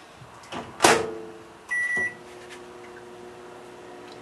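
Over-the-range microwave door shut with a sharp knock, then a single keypad beep, and the microwave starts running with a steady hum as it begins a 30-second heating interval.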